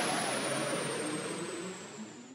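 The fading tail of a neurofunk drum and bass track: a hissing electronic noise wash dies away with no bass or beat left, while a thin high tone glides slowly downward.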